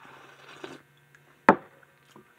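A sip slurped from a bowl of warm drink, then a single sharp knock about a second and a half in as the bowl is set down on the counter.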